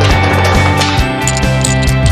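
Upbeat guitar-driven rock background music with a steady beat, with a whooshing transition effect in the first second.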